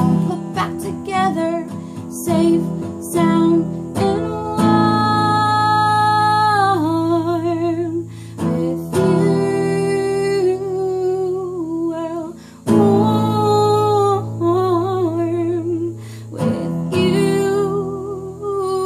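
Acoustic guitar strummed in chords, slightly out of tune, under a woman singing, with several long held notes sung with vibrato.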